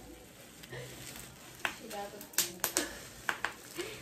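Plastic bubble wrap crinkling in the hands, with several sharp crackles in the second half.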